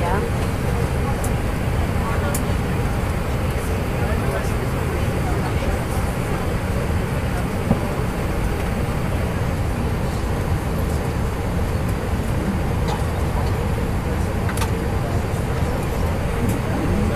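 Steady low rumble of an airliner cabin's air and engine noise, with indistinct murmuring of passengers' voices over it.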